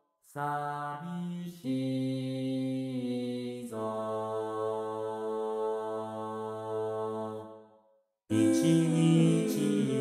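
Male-voice chorus sung unaccompanied by four synthesized Vocaloid voices, in sustained chords that change twice. A long held chord fades out about eight seconds in, and after a short break a louder new phrase begins.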